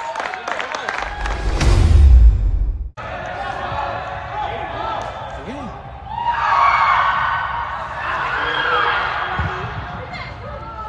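Players shouting on an indoor soccer field, echoing in the large hall, with short thuds of the ball being kicked. A loud low rumble builds about a second in and cuts off abruptly at about three seconds; louder shouts come in the second half.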